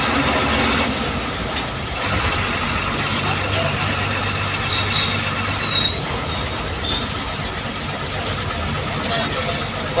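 Inside a moving bus: the engine running with a low hum and road noise as it drives along, with a few brief high squeaks about halfway through.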